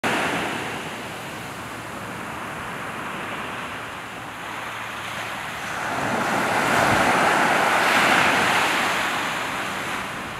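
Small ocean waves breaking and washing up a beach, the surf swelling about six seconds in and easing off toward the end.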